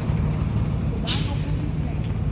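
A heavy vehicle's engine idling with a steady low rumble, and a short hiss of air brakes releasing about a second in.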